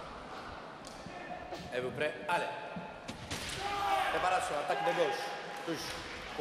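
Sabre fencers' feet stamping and thudding on the piste in a large hall, with a few sharp knocks in the first half. From about halfway through come raised voices.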